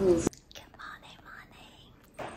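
A woman whispering softly in a quiet room. It follows a brief burst of train-carriage noise that cuts off abruptly a moment in.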